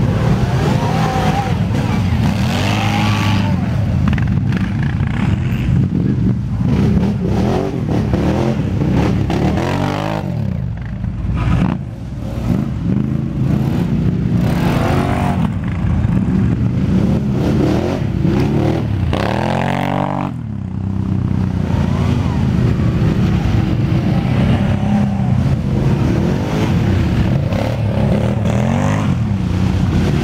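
Quad bike (ATV) engine running hard and revving repeatedly, rising and falling in pitch, as it drives through a muddy trench. It eases off briefly twice, about twelve and twenty seconds in.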